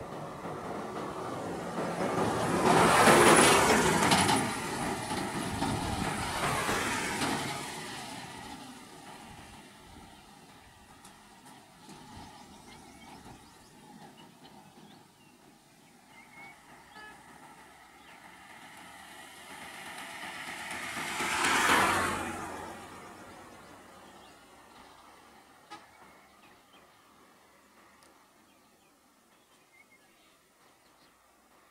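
Road vehicles passing close by, each swelling up and fading away: a loud pass-by about three seconds in and another about twenty-two seconds in, with faint engine sound between.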